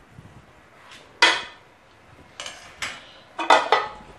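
Steel ladle knocking against the rim of a metal pressure-cooker pot, the clanks of a ladle being tapped off after stirring: one loud clank about a second in, then five quicker clanks over the last second and a half.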